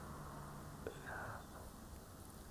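A man's faint, breathy whispering, with one small click near the middle.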